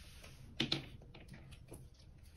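Faint clicks and handling sounds as a leather handbag is lifted by its handle and set down on a table, with one brief louder sound about half a second in.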